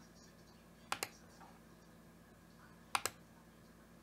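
Sharp clicks from a computer's keys or buttons being pressed: a quick pair about a second in and another pair about three seconds in, over a faint steady background.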